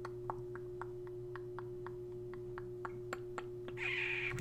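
Quiet room tone: a faint steady electrical hum with light, evenly spaced ticks, about four a second.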